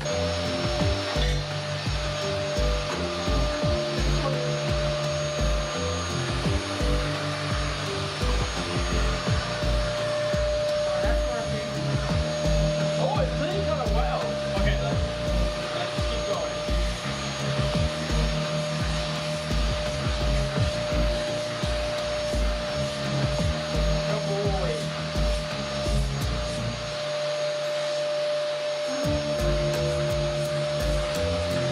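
Vacuum cleaner running with a steady whine while its brush nozzle is worked over a horse's coat. Background music with a steady beat plays over it, its bass dropping out briefly near the end.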